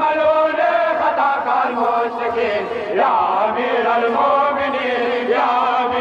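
Men chanting a Shia mourning lament (nauha), with long held notes that bend up and down.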